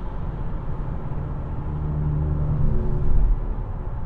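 Road noise inside a car cabin at highway speed: a steady low rumble of tyres and engine. A humming tone swells in the middle and fades about three seconds in.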